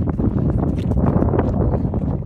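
Wind buffeting the camera microphone in a loud, low rumble, with faint crunching footsteps on stony sand.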